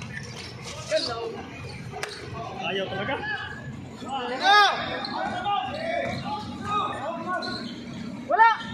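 Outdoor basketball game: a ball bouncing and thudding on the court amid players' and spectators' voices, with one loud, short shout about halfway through.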